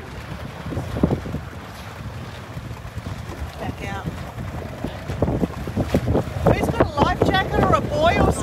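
Wind buffeting the microphone over open water, a steady low rumble, with indistinct voices from about five seconds in.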